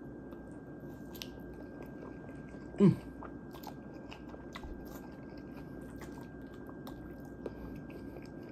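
Close-up chewing and biting of a mouthful from a burrito bowl of lettuce, rice, beans, cheese and chicken: soft wet mouth sounds with many small clicks. A short "mhm" hum comes about three seconds in.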